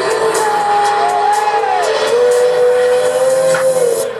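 Electronic dance music in a breakdown: sustained synth notes that slowly bend up and down in pitch, with the kick drum and bass dropped out.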